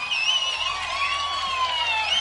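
Several audience members whistling after a song ends at a live blues concert: a few separate high whistles sliding up and down and overlapping, over a low steady amplifier hum.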